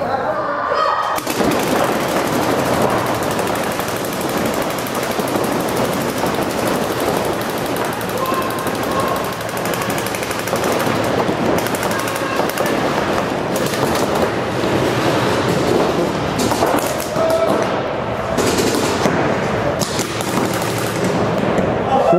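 Many paintball markers firing rapidly in a large indoor hall, starting about a second in; the shots run together into a dense, echoing rattle.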